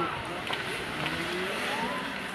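Ice-arena game sound: skate blades scraping and carving on the ice under a steady noisy hum, with short shouts from players and spectators.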